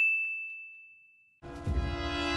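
A single high, bell-like ding sound effect that rings and fades away over about a second. After a brief silence, a steady sustained chord comes in near the end.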